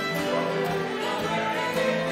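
A Celtic session tune played on fiddle with mandolin and acoustic guitar accompaniment, going steadily.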